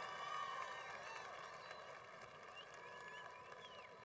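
Large stadium crowd applauding and cheering, with scattered shouts and whistles, slowly fading away.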